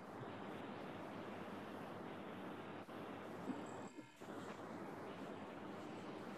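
Faint, steady background hiss of room noise carried over a video call, with a couple of brief cut-outs in the middle.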